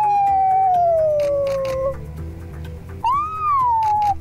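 A run of camera shutter clicks under a loud, high-pitched howl-like call that slides slowly down in pitch for about two seconds, then a shorter call that rises and falls near the end.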